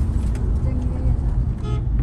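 Steady low rumble of a car's engine and road noise heard from inside the moving car's cabin. Near the end comes a short, single horn toot.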